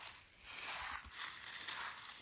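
Dry fallen leaves rustling and crackling as a Garden Weasel wire-cage nut gatherer is rolled through them picking up walnuts, in two swells of rustle.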